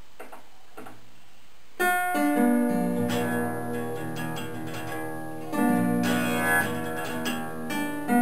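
Acoustic guitar plucked in slow, improvised notes while the player holds its headstock between his teeth, so the vibration carries through the teeth into his head. Quiet for about the first two seconds, then a plucked chord rings out, and a second strong pluck comes a little past halfway, each left to ring and fade.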